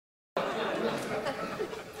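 Studio audience laughter and murmur dying away, after a dead-silent dropout about a third of a second long at the start.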